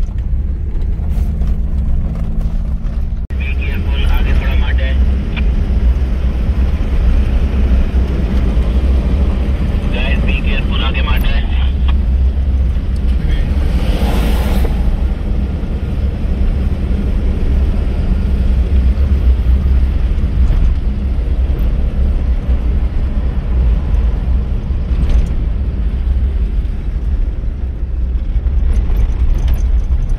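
Inside a vehicle driving off-road over a sandy desert track: a loud, steady low rumble of engine and tyres on sand, with a brief louder rush about fourteen seconds in.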